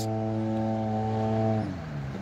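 Vehicle engine running at steady revs with a droning note; about a second and a half in the pitch drops away as the revs fall.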